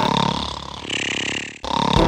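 Cartoon snoring from a sleeping cat: a long, low, rasping breath that fades out about a second and a half in, then the next breath starts.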